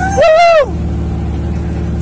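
A man's loud "woo!" whoop over the steady drone of an off-road buggy's engine running at a constant speed.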